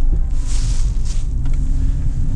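Porsche Cayman 987's flat-six engine running under a heavy low rumble, with a hissing rush of tyres on snow about half a second in that lasts under a second.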